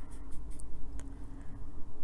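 A paintbrush working watercolour paint in a plastic palette: soft rubbing with a few light clicks, over a low steady rumble.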